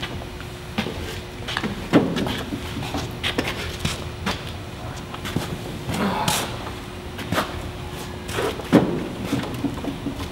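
Scattered knocks, bumps and shuffles of people moving about and scuffling on a small set, with the loudest thumps about two seconds in and near the end, over a faint steady hum.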